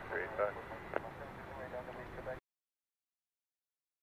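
Faint air traffic control radio voice, the tail of a transmission with a low background rumble under it. It cuts off abruptly to dead silence about two and a half seconds in.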